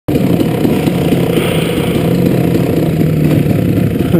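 2001 KTM 380 MXC two-stroke single-cylinder dirt-bike engine running steadily at low revs, its pitch holding nearly even.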